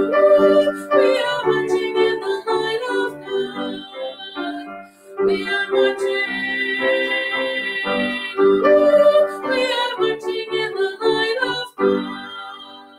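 A woman singing a hymn with grand piano accompaniment, with a short break between phrases about five seconds in.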